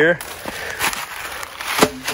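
Footsteps crunching and crackling through dry leaf litter, a few sharp crackles among a low rustle, with a brief voice near the end.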